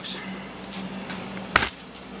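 A single sharp knock about one and a half seconds in, over a faint steady hum.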